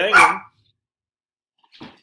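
A dog barking, with one loud bark right at the start.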